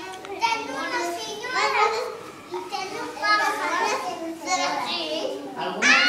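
Several young children's voices talking and calling out over one another.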